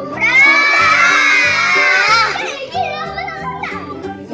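A group of young children shouting together at once for about two seconds, over background music with a steady beat; quieter child voices follow.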